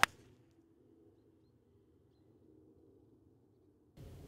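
A golf iron swishes down and strikes the ball with one sharp click right at the start, followed by a faint low hum.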